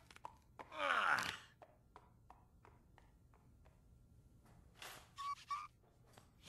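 A person's voice gliding downward in pitch, like a sigh, about a second in, followed by scattered soft clicks and knocks and a short rustling noise near the end.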